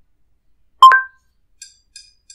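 Google Home Mini smart speaker giving a short, loud two-note electronic chime, the second note higher, about a second in. This is the Assistant's acknowledgement tone before it answers a spoken request. A few faint ticks follow near the end.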